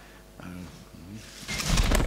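Several reporters' voices calling out to be recognised, faint and overlapping at first. About a second and a half in, a louder rustling noise with a low rumble starts, running into the next questioner's voice.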